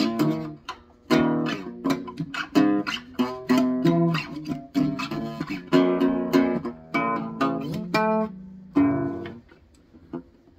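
Acoustic guitar played by hand: a run of plucked notes and strummed chords. It breaks off briefly about half a second in, and the last chord rings away near the end.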